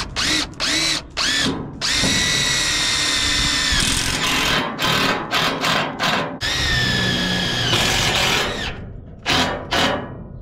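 DeWalt 20V Max cordless impact driver driving screws into wooden floor boards. It runs in short trigger bursts, with two longer runs of about two seconds each, about two seconds in and about six and a half seconds in, its whine rising as it spins up and dropping as each screw seats.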